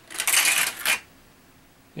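A small die-cast toy car rolls and rattles down a plastic track for about a second. It ends in a brief clatter as it knocks over the plastic Shredder figure.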